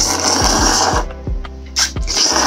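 Udon noodles in thick curry sauce slurped up through the lips. There is one long noisy suck of about a second, then a brief second slurp near the end.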